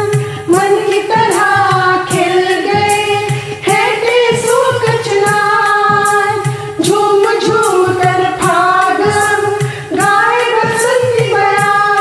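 Hindi Holi film-style song: voices singing a melody over keyboard accompaniment and a steady percussion beat.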